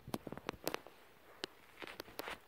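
A series of faint, short taps and rustles: a quick cluster in the first second, a single tap about halfway through, and a few more near the end.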